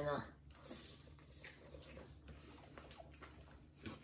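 Faint eating sounds: chewing and forks working through food on plates, with a few brief clicks near the end.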